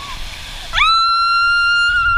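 Rushing water with faint voices, then about three-quarters of a second in a person lets out one long, high-pitched scream that rises quickly and then holds steady; the scream is the loudest sound.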